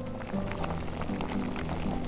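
Soft background music over the bubbling and fizzing of a small pot of seasoned liquid at a simmer, cooking green beans.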